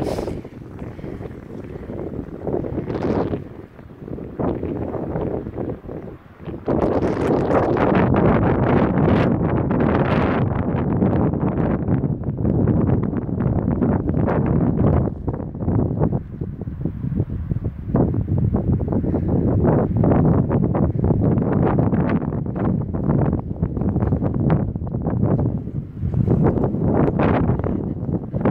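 Wind buffeting a phone's microphone in gusts, a heavy low rumble, markedly louder from about seven seconds in.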